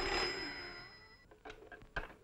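An old black desk telephone's bell ringing, the ring dying away over the first second or so. A few light clicks and knocks follow near the end as the handset is lifted off the cradle.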